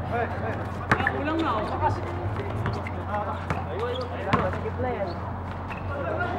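Basketball bouncing on a hard outdoor court: a few sharp knocks, the loudest about a second in and again past four seconds, with players shouting.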